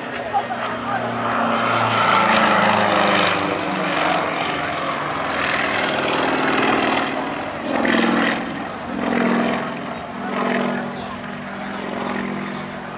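Piston engine and propeller of a small aerobatic monoplane flying a smoke-trailing display. Its note rises and falls as it manoeuvres, swelling three times in the second half.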